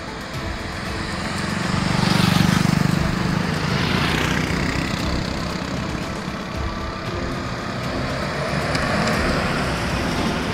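Road traffic: cars passing on a city road, with a passing vehicle loudest about two to three seconds in and another swell about four seconds in.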